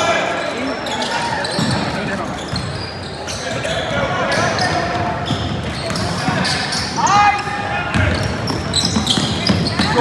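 Basketball being dribbled and bounced on a hardwood court amid the voices of players and spectators calling out, echoing in a large gym.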